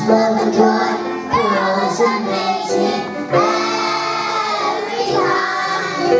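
A young girl singing a solo through a microphone over musical accompaniment, holding one long note in the middle.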